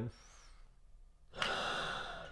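A deep, steady breath drawn in through an incentive spirometer's mouthpiece and hose, a rushing hiss of air that starts sharply about one and a half seconds in. The inhalation lifts the device's piston to measure how much air is taken in.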